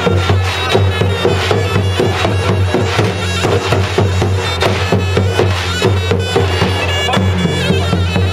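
A zurna plays a loud, nasal folk melody over a steady beat of drum strokes, the usual davul-and-zurna wedding music. A steady low hum runs underneath.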